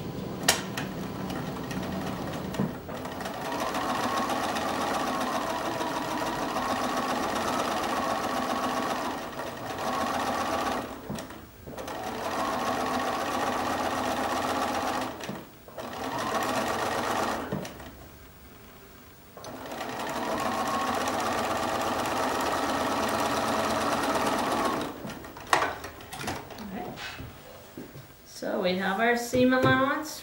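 Bernina sewing machine stitching a quarter-inch seam through paper-pieced fabric, running in four stretches with short stops between, its whine wavering as the sewing speed changes.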